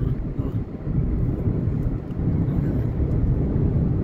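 Steady low rumble of a car driving at speed on a highway, road and engine noise heard from inside the car.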